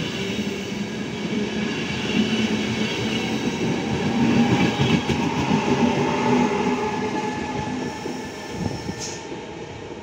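Trenitalia Intercity coaches rolling past along the platform, a continuous rumble of wheels on rail, with an E.464 electric locomotive at the end of the train. The sound swells to its loudest around the middle and fades near the end as the train draws away.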